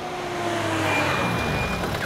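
Car engines and tyre noise as an SUV and a jeep drive in and slow down, a steady rushing sound with a low rumble that grows slightly louder.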